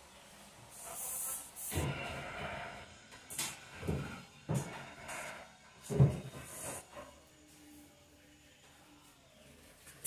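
Handling clatter: a series of separate knocks and short rustling scrapes over the first seven seconds, the loudest knock about six seconds in, then only faint room tone.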